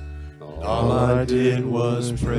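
Live worship music: a man singing a sustained phrase over strummed acoustic guitar and electric bass. The music dips briefly just before the phrase begins.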